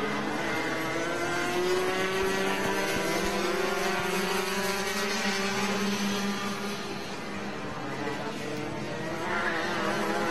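Several Rotax two-stroke kart engines running at racing speed on track, their overlapping pitches rising and falling as the karts lap. The sound eases off a little past the middle and gets louder again near the end.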